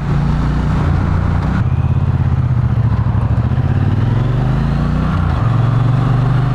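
2020 Triumph T120 Bonneville's 1200cc parallel-twin engine running under way, its pitch rising slowly through the middle and then changing abruptly near the end, with wind rushing over the microphone.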